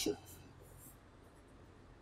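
Whiteboard marker writing on the board: faint short strokes of the felt tip in the first second.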